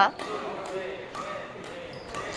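A few faint, short knocks of badminton play, from racket hits on a shuttlecock and footsteps on a wooden court floor, echoing in a large sports hall.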